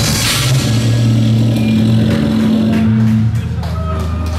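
Live metal band's distorted electric guitar and bass holding a low droning chord, loud and overdriven on the camera's microphone. The drums mostly drop out from about half a second in and come back near the end.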